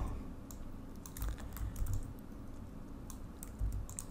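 A few faint, scattered clicks of computer keyboard keys and a mouse during desktop editing work, over quiet room tone.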